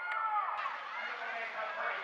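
Overlapping voices of several people talking at once, a steady chatter of a crowd; no engine sound stands out.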